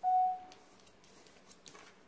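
A single short, clear ding at the start that fades within half a second, followed by a few faint clicks.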